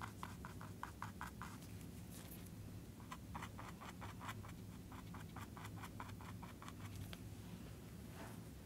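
Paintbrush scrubbing acrylic paint onto a canvas in quick short strokes, faint, in two runs: one near the start and one again about three seconds in.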